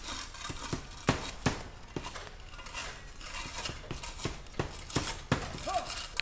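Irregular knocks and clatter of roof tear-off: old shingles and ridge cap being pried up and loosened on the roof, a sharp knock roughly every half second.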